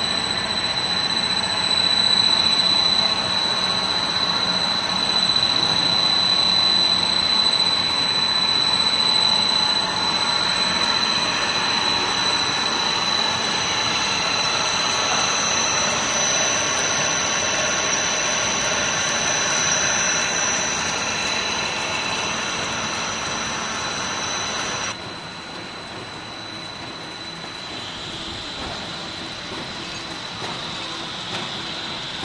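Pet-chew food extrusion line running: a steady mechanical din from the extruder and its conveyors with a constant high whine. About 25 seconds in a second, higher whine stops and the noise drops somewhat.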